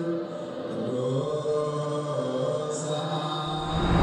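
Slow vocal chanting, long notes held and stepping from one pitch to the next. Near the end a whoosh swells up and peaks.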